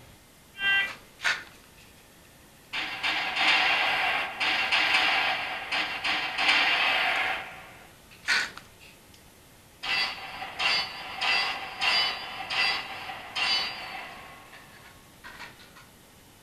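Sound effects from a dry-fire range simulator played through a speaker: two short shots, then a long run of rapid overlapping shots, one more shot, and six evenly spaced hits with a ringing tone, one for each steel plate.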